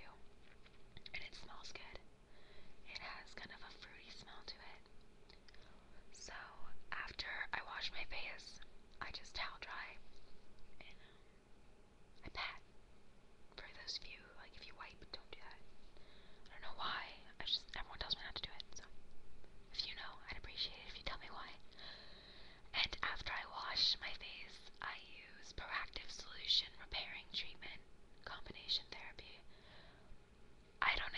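A woman whispering, in short phrases with brief pauses between them.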